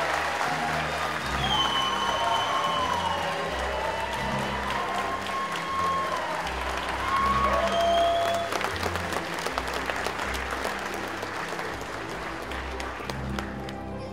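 Audience applauding, with music playing underneath. The applause gradually thins out over the second half.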